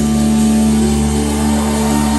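Live rock band holding a sustained chord on electric guitars and bass, left ringing after the drums stop, as the song ends.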